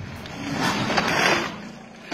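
A small car cut down to its front half, running on a small trailing wheel, driving across a dirt yard. A rushing noise of its engine and tyres on the dirt swells about half a second in and fades toward the end.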